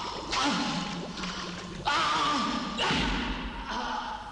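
Three sudden heavy hits, each followed by a hissing tail that fades over about a second: dramatic impact sound effects on a film soundtrack.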